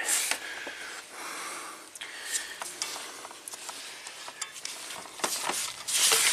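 Gloved hands rubbing, pressing and flexing a wiring harness in its plastic loom in a truck's engine bay: a steady rustle and scrape with many small clicks. The harness is being worked by hand to find where the wheel speed sensor wire is breaking, as the ohmmeter reading changes.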